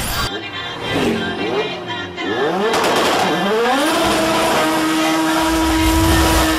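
Logo sound effect: a sharp hit at the start, then a car engine revving in rising sweeps that climb, drop back and climb again, settling into a held tone over a deep rumble near the end.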